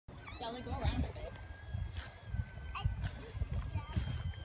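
Wind buffeting the microphone in gusts, with a young child's wavering voice in the first second and a faint steady high tone throughout.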